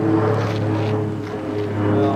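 Background music: a steady low drone under sustained chord tones that change pitch near the end.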